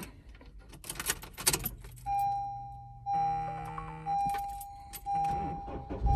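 Car keys jangle and click as the ignition key is turned. About two seconds in, a dashboard warning chime starts, one tone sounding about once a second and fading after each ding.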